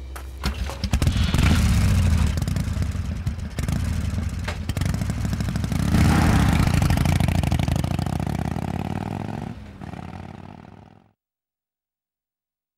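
A loud engine sound with clatter, rising about half a second in and swelling again around six seconds, then fading and cutting out to silence about eleven seconds in.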